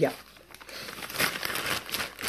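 Clear plastic bag of clay crinkling as it is handled close to the microphone, starting about half a second in and growing stronger after a second.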